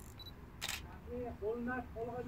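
A single sharp click, then from about a second in a faint voice singing or humming a few short held notes.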